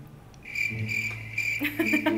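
Crickets chirping in short, evenly repeated pulses of about three a second, starting about half a second in, over a low steady hum.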